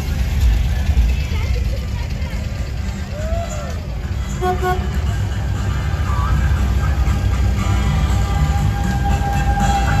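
Low, steady rumble of VW vehicles, among them air-cooled Type 2 buses, driving slowly past at close range, with a brief horn toot about four and a half seconds in.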